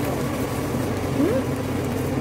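Steady low hum and rumble of a shop's background noise, with one short rising tone about halfway through.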